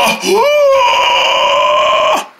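A person's voice giving one long, high wail. It rises in pitch about half a second in and is then held steady: a mock cry of dismay.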